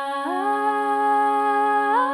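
Layered a cappella voices holding a wordless hummed chord over a steady low note. The upper parts glide up to a new chord about a quarter second in and again near the end.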